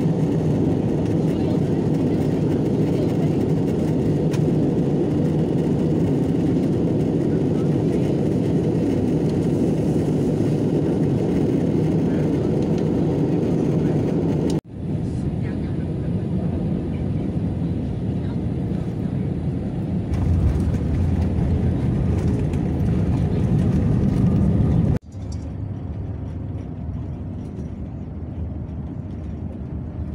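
Steady cabin noise of a jet airliner in flight on descent. After a cut, the airliner rolling on the runway after landing, its noise swelling with a deep rumble about halfway through. After a second cut, the quieter steady engine and road noise inside a bus on a highway.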